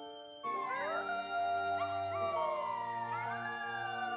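Long wolf-like howls begin about half a second in, several overlapping and mostly falling in pitch, over sustained orchestral music.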